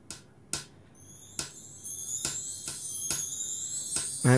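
Steady clock ticking, a little over two ticks a second. From about a second in, high shimmering music tones swell in over the ticks.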